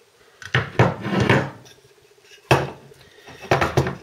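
Metal speedometer cases being handled on a wooden table, giving clinks, knocks and scrapes in three short clusters. The sharpest knock comes about two and a half seconds in.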